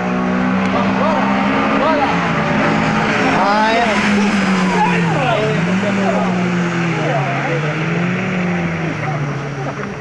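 Race car engines running hard on the circuit, pitch dipping around the middle and climbing again as the cars work through a corner, with wavering tyre squeal over them.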